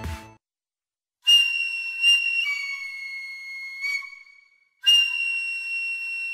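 Background music: a solo high flute plays long held notes, the first phrase stepping down in pitch, then after a short break a second long held note near the end. Electronic music cuts out in the first half second.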